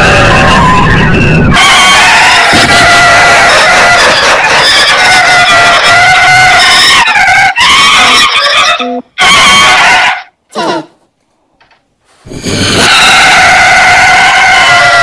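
Heavily distorted, overdriven audio-effects remix of layered cartoon and logo sounds, loud throughout with many warbling tones stacked on top of each other. The sound changes character about a second and a half in, breaks up into choppy bursts and short silences from about nine to twelve seconds in, then comes back at full loudness.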